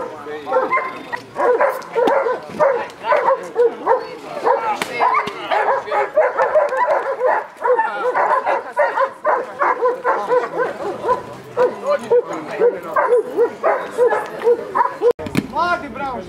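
Dobermans barking over and over, several short barks a second, broken off abruptly just before the end.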